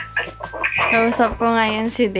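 A girl's high-pitched laughing and vocalising, with a long drawn-out note in the second half.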